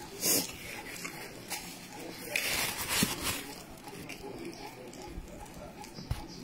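A person eating pounded yam and soup by hand, with close-up wet chewing and mouth sounds and a couple of short, louder noisy bursts near the start and around the middle.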